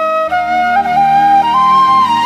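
A flute playing a melody in a Chhattisgarhi song, its line stepping upward in pitch in a few held notes, over a sustained low backing with the drums dropped out.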